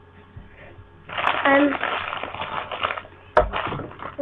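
A person's voice talking or murmuring for about two seconds without clear words, then a single sharp knock near the end.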